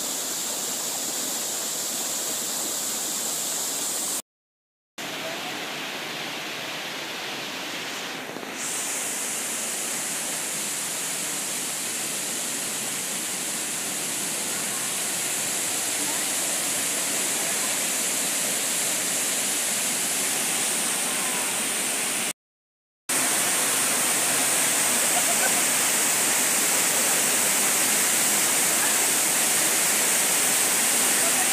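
Yeh Hoo waterfall pouring into a rocky stream: a steady, loud rush of falling and flowing water. It breaks off into silence twice, briefly, about a sixth of the way in and about three quarters of the way in, and is a little louder after the second break.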